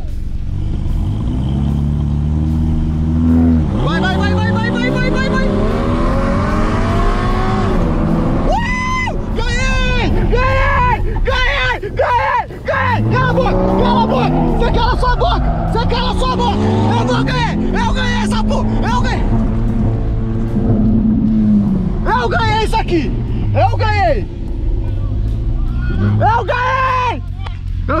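Jaguar F-Type engine heard from inside the cabin, held at steady revs and then accelerating hard from a standing start: about four seconds in the pitch climbs in repeated rising sweeps that drop back at each gear change, and another run of rising sweeps follows from about the middle. Voices shout over it at times.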